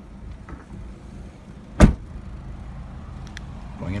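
A single loud slam about two seconds in: the rear liftgate of a 2017 Nissan Rogue S being shut.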